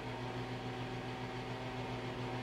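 Steady low background hum with a faint even hiss, unchanging throughout.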